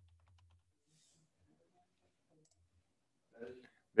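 Very quiet computer keyboard typing: a few faint key clicks as a line of code is finished. A brief murmur of a man's voice comes near the end.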